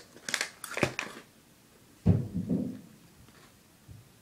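Crinkling plastic candy wrapper handled for about a second, then a single thump about two seconds in as the package is set down on the table.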